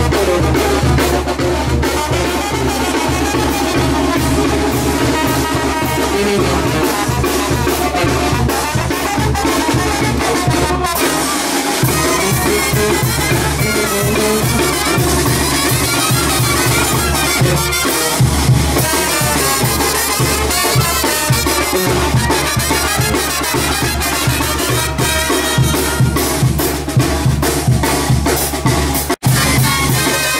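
Brass band of trumpets, sousaphone, snare drum and bass drum with cymbal playing lively dance music with a steady drum beat. The sound drops out for an instant near the end.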